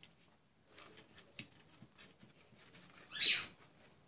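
Light rustles and small taps of handmade craft flowers and leaves being handled and set into a pot, with one short, louder squeak-like rub about three seconds in.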